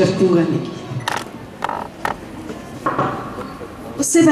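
A woman's voice over a hall PA briefly at the start, then a few sharp knocks and rustles from a handheld microphone being handled, about three in all.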